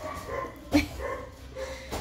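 A dog barks once, short and sharp, about three-quarters of a second in.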